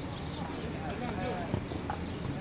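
Distant voices of football players calling and shouting across an open pitch, with a single knock about one and a half seconds in.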